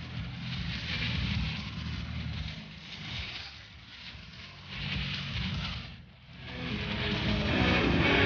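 Rough, noisy sound of a live rock concert with no clear tune, rising and falling and dipping about six seconds in. Guitar music then builds in near the end.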